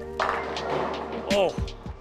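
A bowling ball smashing into a full rack of ten-pins for a strike: a sudden clatter of pins scattering that fades within about a second, heard under background music.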